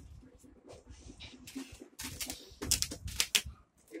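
Clear sellotape being worked off a cardboard TV carton by hand: low scratching, then a few short, loud ripping noises about two seconds in.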